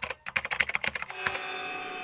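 Rapid typing on a laptop keyboard, a quick run of key clicks, which gives way a little past halfway to a steady electronic tone.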